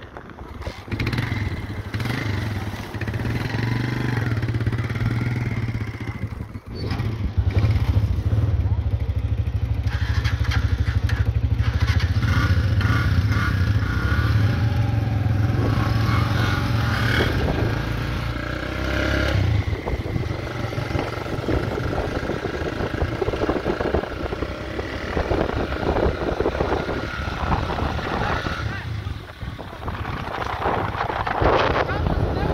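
Small motorcycle engine running, louder from about seven seconds in, dying away around twenty seconds; after that, voices and wind.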